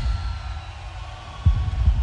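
Deep, low throbbing rumble with a single heavy thud about one and a half seconds in.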